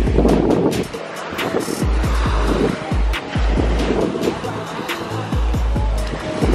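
Wind buffeting the microphone in gusts, rumbling on and off every second or so, over the hiss of small waves washing up on a sandy beach.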